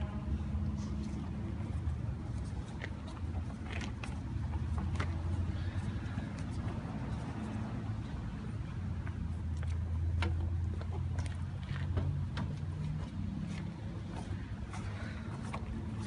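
Scattered light clicks and taps of a black plastic pipe fitting being unscrewed and handled by hand at a pipe vise, over a steady low rumble.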